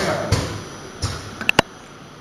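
An automatic liquid filling machine at work: several knocks and then two sharp metallic clinks close together, about a second and a half in, from its filling heads and the containers on its conveyor, over a low steady background noise.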